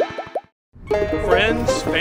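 Cartoon bubble-popping sound effects from an animated title sting: a quick run of short rising plops over electronic music, which cuts off to silence about half a second in. After a brief gap a new music track begins.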